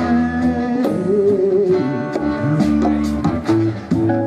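Live rock band playing a passage between vocal lines: electric guitar lines over a Rickenbacker electric bass.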